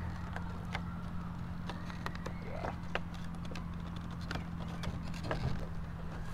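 Scattered light clicks and knocks of plastic camera packaging being handled and pulled out of its box, over a steady low hum.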